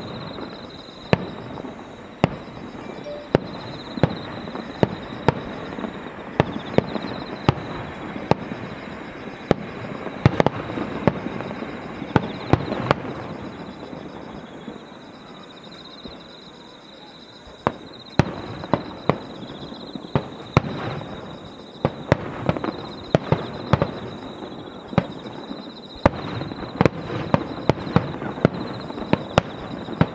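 Aerial firework shells bursting one after another: sharp bangs over a continuous rumble and crackle. The bangs thin out about halfway through, then come thick and fast through the second half.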